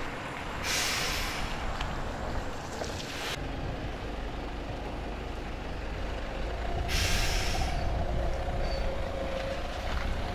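Optare Solo midibus pulling away from its stand: a long air-brake hiss as the brakes release soon after the start, then the diesel engine's rumble as it moves off, with a second, shorter hiss about seven seconds in and a faint whine near the end.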